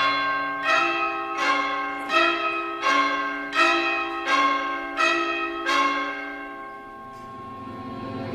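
Orchestral bells striking a repeated two-note figure, about one stroke every three-quarters of a second, each stroke ringing on into the next. The strokes stop about six seconds in, and a low, held orchestral sound swells near the end.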